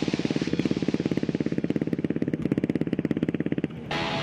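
Quad bike engine running at low, steady revs, a fast even pulse. It cuts off shortly before the end, and guitar music takes over.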